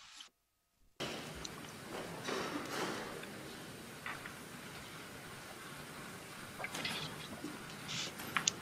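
Playback of a live choir recording starting about a second in: a steady hiss of room noise with scattered small clicks and rustles, and no singing yet.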